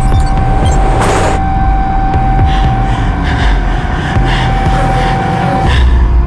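Dark film-trailer score: a loud low rumbling drone under one held high tone, with a whoosh about a second in. The tone cuts off just before the end as a hit lands.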